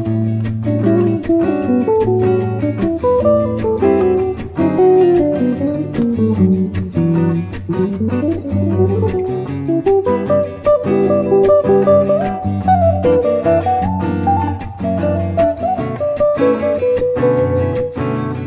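Background music led by acoustic guitar, a picked melody over strummed chords, with a few notes sliding in pitch about eight seconds in.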